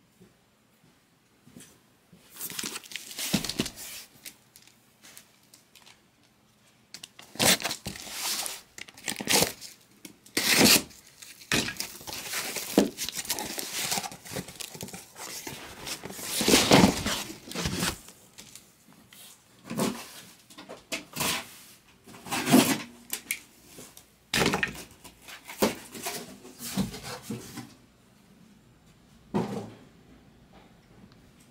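A cardboard case of trading-card boxes being torn open and handled: irregular tearing, rustling and scraping in uneven bursts that start a couple of seconds in and stop shortly before the end.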